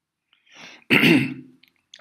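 A man coughs once, clearing his throat, about a second in.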